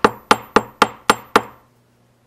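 Hair stacker with a clump of deer hair knocked repeatedly on the table, about four sharp knocks a second, six in all, stopping about a second and a half in. The knocking settles the hair so that its tips even up for the wing.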